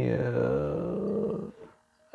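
A man's long, drawn-out hesitation sound, a held "uhh" that turns gravelly and creaky, lasting about a second and a half, then a short pause.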